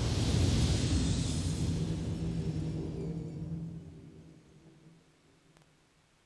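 Closing sound of a Dolby Digital logo trailer: a deep, rumbling sustained chord with a high shimmer on top, dying away over about five seconds.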